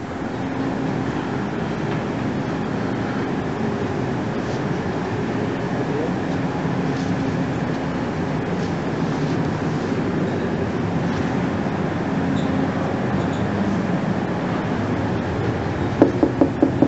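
Steady whooshing hum of the large air blowers in the SS Great Britain's enclosed dry dock, part of the dehumidifying system that keeps the air round the iron hull dry, with faint voices in the background.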